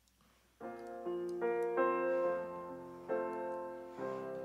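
Piano-voiced stage keyboard starting to play after a silence, with sustained chords struck one after another that ring and slowly fade, a fresh chord coming about three seconds in. It is the opening of a song.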